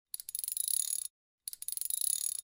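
End-screen sound effect: a high, metallic rapid clicking with a ringing tone, in bursts about a second long. One burst runs through most of the first second and the next starts about a second and a half in.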